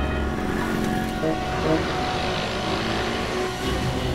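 Road traffic: motor vehicles running and passing on a city street, under a background score of held, sustained tones.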